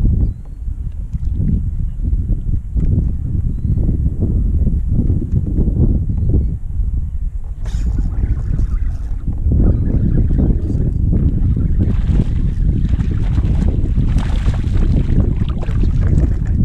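Wind buffeting the microphone: a heavy low rumble that turns louder and hissier after about halfway.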